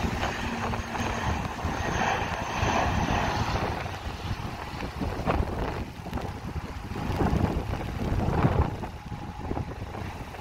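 ATR 72 twin-turboprop airliner's engines and propellers running at takeoff power during its takeoff roll, a steady rushing drone. Gusts of wind buffet the microphone, most strongly in the second half.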